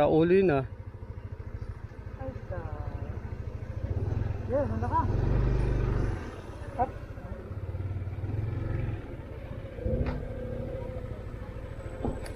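Yamaha NMAX 155 scooter's single-cylinder engine running under load as it climbs a rough dirt trail, swelling louder with throttle about four seconds in and easing off after about six seconds.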